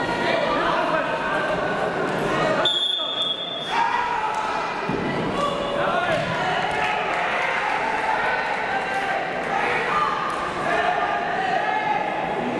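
Indistinct voices of several people calling out, echoing in a large sports hall. About three seconds in, a single high steady tone sounds for about a second.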